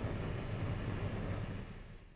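Steady rushing noise with a low rumble, fading out near the end: a gas gusher blowing, as heard on an old newsreel soundtrack.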